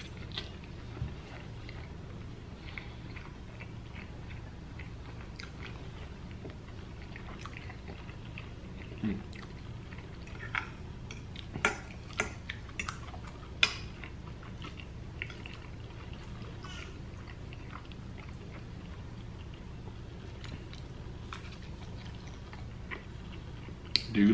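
A person chewing soft food, with scattered sharp clicks of a metal fork against a glass baking dish as more is scooped up, most of them in the middle. A steady low hum sits underneath.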